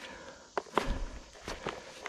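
Footsteps and rustling in dry leaf litter: a handful of scattered, irregular crunches with a soft low thud about half a second in.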